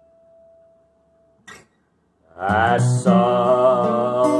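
A single acoustic guitar note rings on and fades away, followed by a brief pause. About halfway through, a strummed acoustic guitar chord comes in loudly along with a sustained wordless vocal tone.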